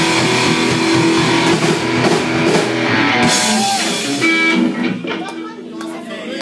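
Live rock band with electric guitars and drums playing the last bars of a song; the drums and cymbals stop about three seconds in, leaving a guitar chord ringing that fades toward the end.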